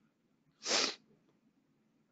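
A single short, sharp breath noise from a person, about half a second long, a little over half a second in. It sounds like a sneeze, a snort or a laughing exhale through the nose.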